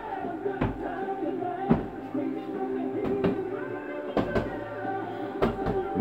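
A heavy punching bag thudding under a boy's punches, about six irregular hits roughly a second apart, over steady background music.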